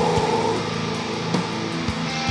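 Black metal: distorted electric guitars holding sustained chords, with a few widely spaced drum hits.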